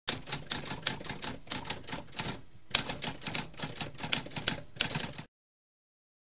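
Typewriter keys clacking in a rapid run, with a short pause about two and a half seconds in, cutting off suddenly a little after five seconds.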